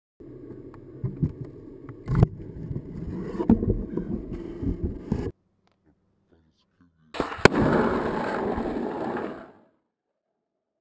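Skateboard wheels rolling on rough pavement with several sharp clacks of the board, in two runs separated by about two seconds of silence; the second run opens with one loud clack.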